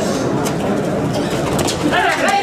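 Spectators' chatter and shouting around a kabaddi court during a raid, a dense mix of many voices with scattered sharp clicks.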